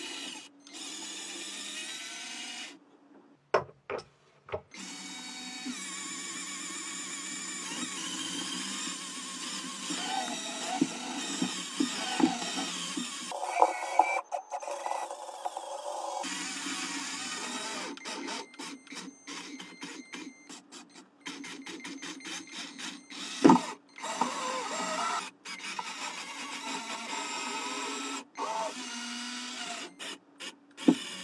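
Small electric motors and plastic gears of a toy building-block robot car whirring steadily as it drives and climbs, broken by a few abrupt gaps and choppy stretches. A sharp knock, the loudest sound, comes about two-thirds of the way in.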